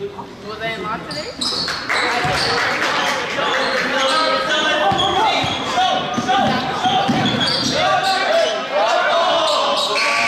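A basketball bouncing on a hardwood gym floor during a game, with players' shouts, all echoing in the hall. It is fairly quiet for the first two seconds, then busier and louder once play is running.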